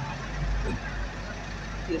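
Car engine running at low speed, heard as a steady low rumble from inside the cabin, with faint voices over it.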